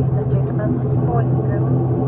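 Pratt & Whitney PW127 turboprop engines and propellers of an ATR 72-600 running with a steady low drone, heard inside the cabin as the aircraft rolls along the runway after landing.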